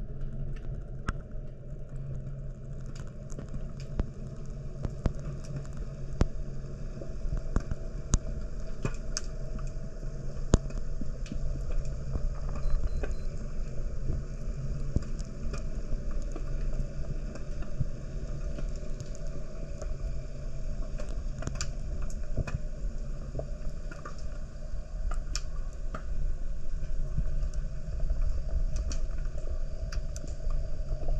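Underwater ambience heard through a camera: a steady low rumble with many scattered sharp clicks and crackles.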